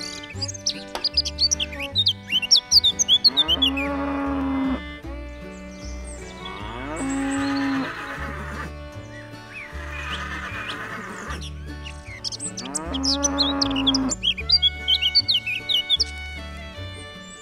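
A cow mooing several times in long calls a few seconds apart, with birds chirping near the start and near the end, over background music with a steady repeating bass line.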